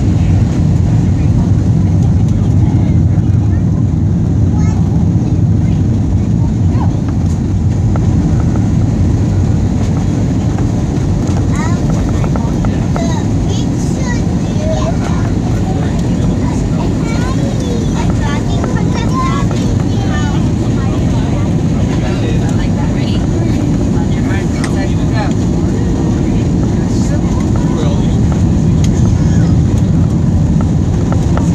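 Passenger jet cabin noise on final approach and landing: a steady low rumble of engines and airflow that grows a little louder near the end. Faint voices sound underneath.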